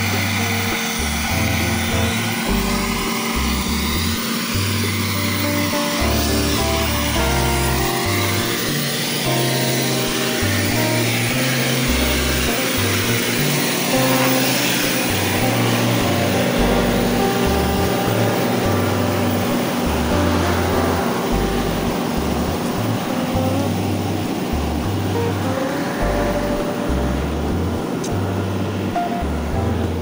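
Background music with a bass line that changes note every half second or so, laid over the steady running of a concrete mixer truck's engine.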